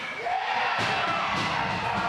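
Crowd of hockey fans cheering in an ice rink, with music playing underneath.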